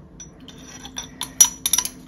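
Metal spoon stirring fibre reactive dye powder into water in a plastic measuring jug: scattered light clinks and scrapes that come more often after the first second, the sharpest about one and a half seconds in.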